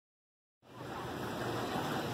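Silence, then about half a second in a steady rushing outdoor ambience cuts in abruptly and carries on.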